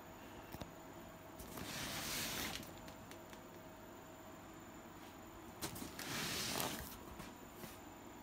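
Two soft rustling or handling noises, each about a second long, one near two seconds in and one near six seconds in, over low room hiss.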